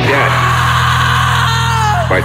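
Black-metal band music with the drums taken out: a low distorted chord held steady, with a yelled or screamed vocal over it. Near the end a line slides down in pitch.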